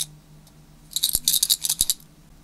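Precision screwdriver working a tiny screw in a metal lens rear-mount ring: one sharp click at the start, then a quick run of light metallic clicks and scrapes lasting about a second.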